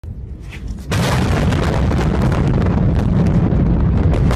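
Explosion of a building: a low, steady noise, then about a second in a sudden, very loud blast that carries on as a sustained rumble crackling with debris.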